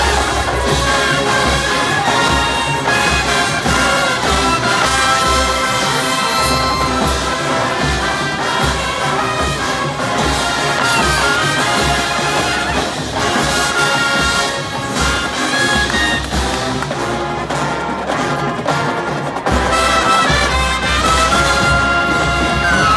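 College marching band playing on the field: full brass chords over drums and front-ensemble percussion. The music drops briefly a couple of seconds before the end, then comes back in full.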